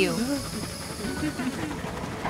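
Cartoon sound effect of a runaway train hissing steadily, with faint voice sounds underneath in the first half.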